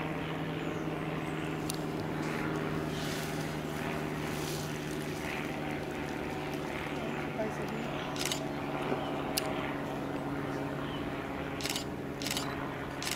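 Steady low drone of a distant engine, with a few single sharp clicks of camera shutters, mostly in the second half.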